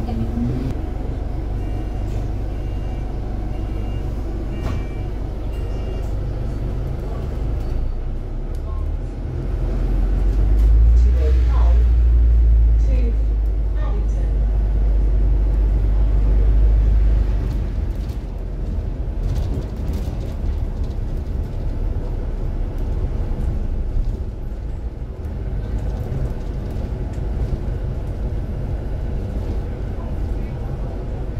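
Inside a moving London double-decker bus: a steady low engine and road rumble, which swells louder for several seconds in the middle as the bus pulls on, then settles back.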